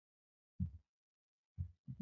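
Near silence with two faint low thuds about a second apart.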